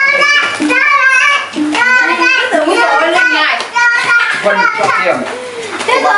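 Children's voices talking with hardly a pause, high-pitched speech.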